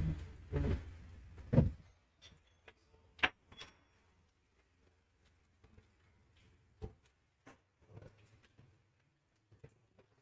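Handling sounds of bicycle assembly: a few soft knocks in the first two seconds, a sharp click of small metal parts about three seconds in, then a few faint ticks.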